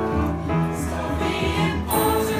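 A small mixed choir singing together to piano accompaniment, over a regular low beat.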